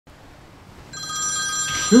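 A telephone ringing, starting about a second in with a steady high-pitched ring, and a short laugh right at the end.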